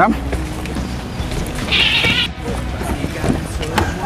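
Soft background music, with a brief high-pitched animal call about two seconds in.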